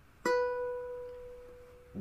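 A Kala ukulele's A string is plucked once at the second fret, sounding a single B note about a quarter second in, which rings on and slowly fades.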